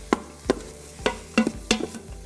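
A wooden spoon stirring onions, garlic and butter in the stainless steel inner pot of an Instant Pot on sauté. About five sharp knocks and scrapes of the spoon against the pot ring out over a faint sizzle.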